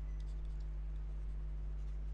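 Faint scratching of a stylus writing on a pen tablet, a few light strokes mostly in the first half second, over a steady low electrical hum.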